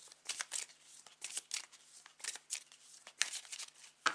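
A deck of tarot cards being shuffled by hand: irregular runs of quick card slaps and swishes, with one sharper snap about three seconds in.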